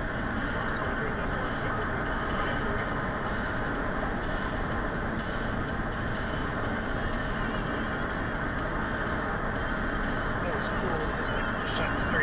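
Steady road and engine noise inside a car cruising at highway speed.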